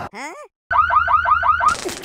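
Comic sound effects: a quick run of sweeping glides, a moment of dead silence, then a fast rising-and-falling alarm-like chirp repeating about six times a second, cut off by a short burst of noise.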